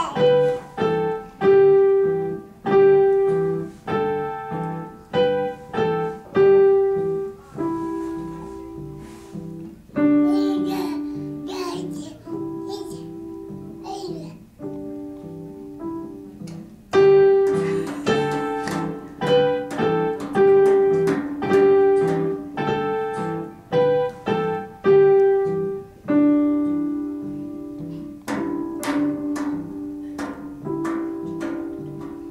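Digital piano played by a beginner: a slow, simple tune picked out one note at a time, with a low note sounding under each melody note.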